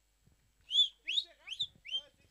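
Four short whistled calls, each rising or arching in pitch, about 0.4 s apart, the first the loudest.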